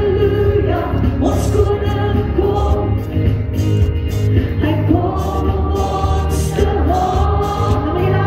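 A woman singing a gospel song into a microphone, amplified, over accompanying music with a strong steady bass; the sung notes are drawn out and gliding.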